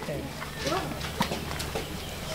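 A few light knocks of wooden blocks on a hand-built coffee-cherry press as fresh coffee cherries are pressed to split off their pulp.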